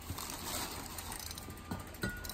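Ratcheting clicks of a small porcelain dove music box's wind-up mechanism being turned by hand.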